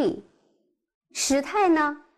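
A woman speaking, with a short pause in the middle.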